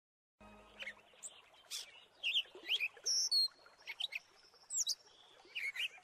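Birdsong: a varied string of short, high chirps and whistles, starting out of silence about half a second in.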